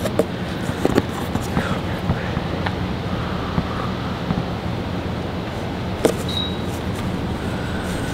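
Clothes and cardboard boxes rustling, with a few soft knocks, as garments are lifted out and sorted by hand, over a steady low motor hum.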